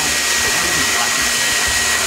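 Vacuum cleaner motor running with a steady rushing noise and a thin high whine.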